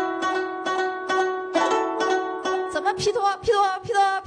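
Guzheng (Chinese zither) played, a rapid run of repeated plucks over sustained ringing notes.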